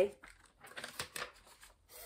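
Paper card rustling and crinkling in short, faint bursts as it is handled and put up against a wall.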